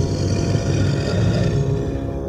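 A film monster's roar, a rough, low, snarling sound effect lasting nearly two seconds, over a sustained dark musical drone in the score.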